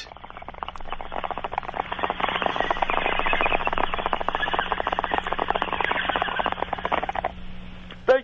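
A bong being hit: water in the pipe bubbling and gurgling in a rapid crackle over a steady low hum, stopping about seven seconds in.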